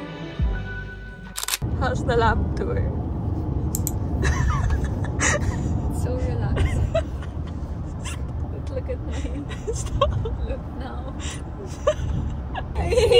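Background music that cuts off about a second and a half in, giving way to the steady low rumble of road noise inside a moving car's cabin, with a woman's voice and laughter over it.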